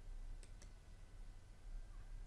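Faint room tone with a low hum and two faint short clicks about half a second in.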